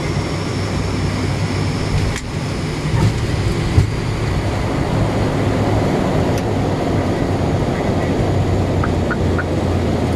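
Flight-deck noise of an ATR 72-600 turboprop on its landing roll: a steady rumble of the engines and the wheels on the runway, with a sharp knock about four seconds in.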